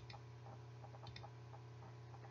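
Near silence: room tone with a steady low hum and faint ticking, about two ticks a second, some ticks in close pairs.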